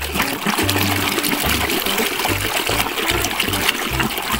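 A hand sloshing and scrubbing a toy under water in a tub, with steady splashing and swishing of water, over background music.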